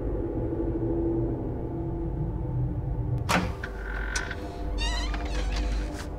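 A low droning rumble runs throughout. About three seconds in there is a sharp click, and soon after the wooden cabinet door's hinges creak as it swings open.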